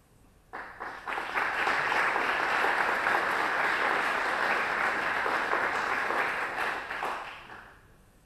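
Audience applauding: the clapping starts about half a second in, swells quickly, holds steady, then dies away near the end.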